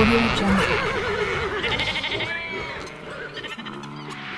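Farm animal calls: a bleat with a wavering pitch, then other shorter calls, all growing fainter.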